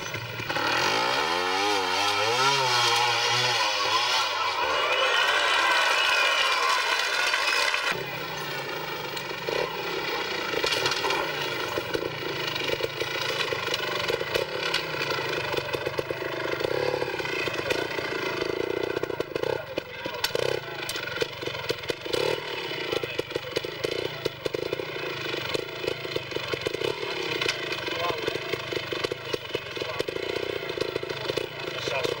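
Two-stroke Gas Gas trials motorcycle engine revving up and down repeatedly under the throttle for the first several seconds. After an abrupt change about eight seconds in, it runs at low revs with small irregular blips.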